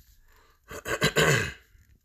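A man clearing his throat once, a short burst a little under a second long about halfway through.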